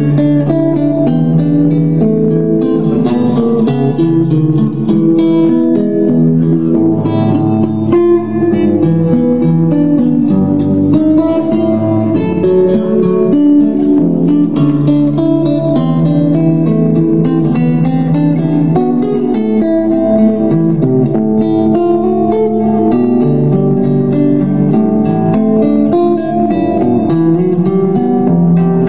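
Solo acoustic guitar played live: a continuous melody of plucked notes over moving bass notes.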